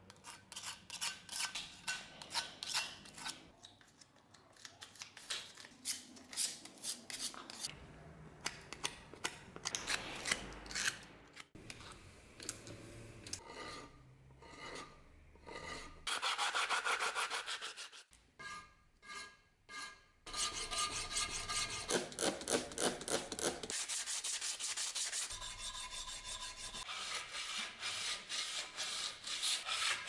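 Quick repeated rasping strokes of a hand file and sandpaper smoothing hardened putty on a vise body, with a putty knife scraping filler across the metal near the start. The sound changes abruptly several times between short clips.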